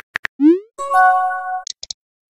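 Texting-app sound effects: a few keyboard tap clicks, then a short rising "bloop" as the message is sent, then a steady electronic chime chord held for under a second as the message bubble appears, and a few faint ticks near the end.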